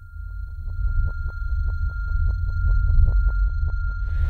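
Suspense sound design: a deep rumble under a steady high ringing tone, with a fast, even ticking of about six a second that grows louder and stops shortly before the end.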